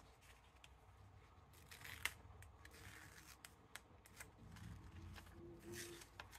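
Faint rustling and crinkling of taped-down sublimation transfer paper being lifted and peeled off freshly pressed polyester fabric, with scattered small ticks. A sharp tick about two seconds in is the loudest sound, and there is a longer rustle near the end.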